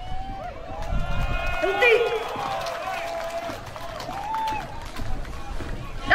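A troupe of children in boots marching in step, their footfalls stamping in rhythm, with a voice calling in long drawn-out tones over them.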